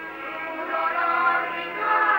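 A group of voices singing a slow song, on an old film soundtrack with a dull sound and no top end. It is softer at first and swells again near the end.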